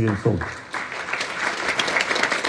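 An audience clapping, starting about half a second in as a man's amplified voice breaks off, and going on steadily.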